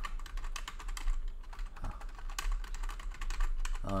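Typing on a computer keyboard: a rapid, uneven run of key clicks.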